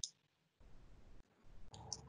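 Near silence with faint low room noise that cuts in and out. A short sharp click comes at the start and two faint clicks come near the end.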